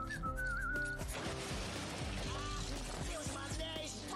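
Cartoon soundtrack playing quietly: a short wavering whistle over background music in the first second, then a steady hiss under the music.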